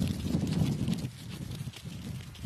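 Adélie penguins' feet crunching on packed snow in quick, uneven steps as they walk past close by, over a low rumble that is loudest in the first second.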